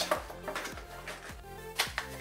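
Background music with light clicks and rustles of a small cardboard box being opened and its insert slid out by hand, the sharpest click near the end.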